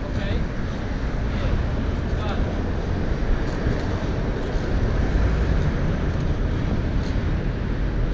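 Steady wind noise buffeting the microphone of a rider's action camera while cycling at speed, over a low rumble of city traffic.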